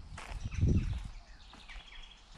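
Footsteps on a dirt woodland path and rustling of a handheld camera, with one heavier low thump about half a second in.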